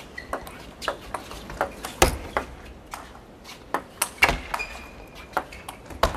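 Table tennis rally: the ball clicking sharply off the rackets and the table in quick, irregular succession, about a dozen hits, the loudest about two seconds in.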